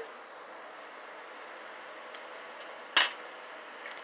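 A single sharp click about three seconds in, with a few faint ticks, as a small metal enamel pin is worked off its backing by hand, over a low steady room hiss.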